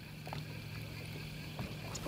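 Low, steady hum of a small boat's idling engine over faint water and wind noise. The hum stops about one and a half seconds in.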